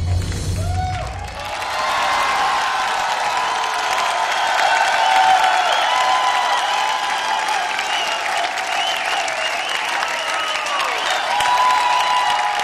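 Studio audience applauding and cheering, with the dance music ending about a second in.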